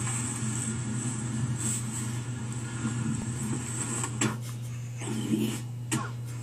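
Dead air on a live news broadcast: a steady low hum under faint background noise, broken by a few short clicks in the second half.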